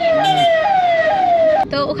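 Electronic siren sounding a repeating falling glide, about two sweeps a second, that cuts off abruptly near the end.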